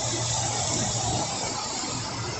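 Steady hiss of heavy rain falling and running onto a flooded street, with a low steady hum underneath.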